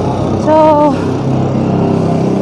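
A motor vehicle engine running nearby, a steady low hum under a woman's single spoken "so".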